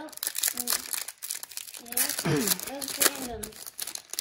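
Foil wrapper of an Upper Deck hockey card pack being torn open by hand, crinkling and crackling throughout. A voice speaks briefly about halfway through.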